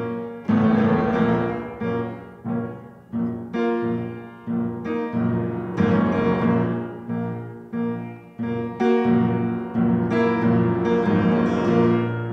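Upright piano played solo: chords struck about twice a second, each ringing and decaying, with fuller, louder passages building up near the start and again in the second half.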